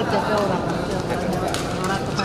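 Voices talking, with a few short sharp clicks in between.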